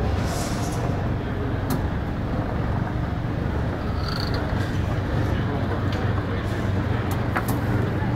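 Steady low hum of an indoor public space with faint background voices, and a few light clicks.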